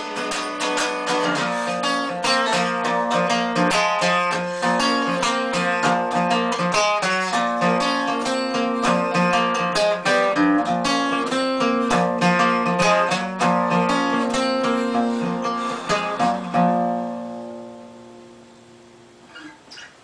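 Solo acoustic guitar playing a quick, busy pattern of picked notes and chords, no voice. About three-quarters of the way through it stops on a last chord that rings out and fades.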